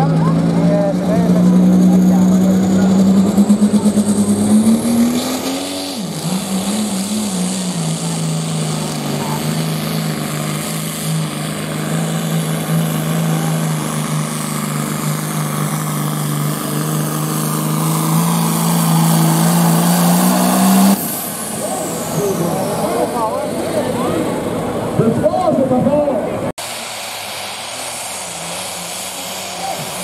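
Pro Farm class turbocharged diesel pulling tractor at full throttle hauling a weight sled. The engine note climbs over the first few seconds with a high rising whine, drops to a lower steady note under load at about six seconds, and holds until about two-thirds of the way in. Then the throttle is cut and the whine falls away.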